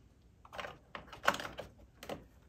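Short clicks and knocks of plastic vacuum parts being handled and pressed into place as a spacer is fitted back onto the base of an upright vacuum, starting about half a second in.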